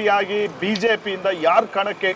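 Only speech: a man talking steadily.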